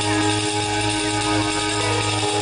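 Live folk-band music: sustained held notes over a low pulsing beat, with hand-held tambourine and electric guitar.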